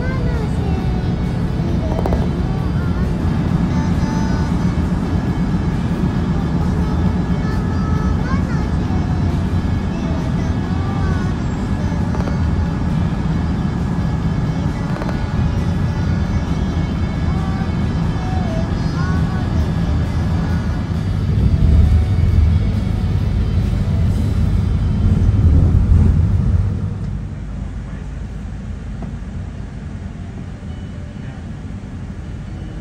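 Engine and road rumble heard from inside a moving bus. It swells for several seconds about two-thirds of the way through, then drops away.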